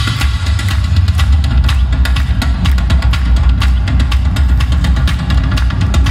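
Live rock band playing loudly through a PA, with fast, steady drumming over heavy bass and sustained guitar, heard from within the audience.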